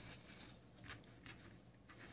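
Near silence: room tone with a few faint, brief rustles.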